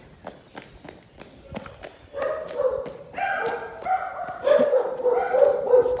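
Footsteps on pavement, then from about two seconds in a dog barking in a steady run of calls.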